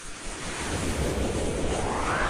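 Whoosh sound effect from an animated logo outro. A rushing noise swells up, and a sweep rises in pitch through the second half, building towards a peak.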